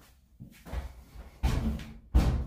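A front-load clothes dryer's metal cabinet bumping against the washer and stacking kit as it is lifted into place on top. There are a few knocks, the loudest a heavy thud about one and a half seconds in.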